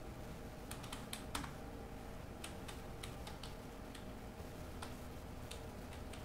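Computer keyboard typing: faint, scattered keystrokes in short runs of clicks.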